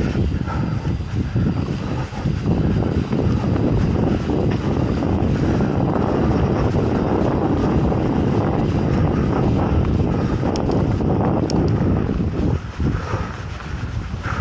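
Wind buffeting the camera microphone, mixed with tyre rumble on a dirt trail, as a mountain bike rolls along at speed. The rumble swells about two seconds in, holds steady, and eases shortly before the end.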